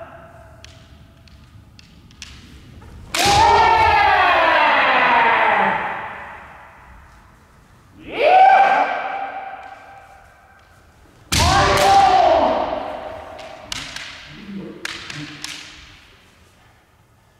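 Kendo fighters' kiai: three long, drawn-out shouts that fall in pitch, the first and last opening with a sharp smack as a strike lands. A few lighter knocks follow near the end.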